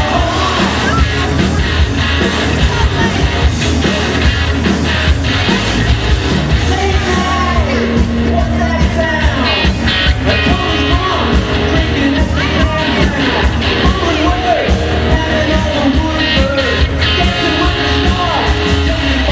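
Live rock band playing through a PA: electric guitar, bass guitar and drums with a lead singer, a steady beat, the vocal coming in strongly from about seven seconds in.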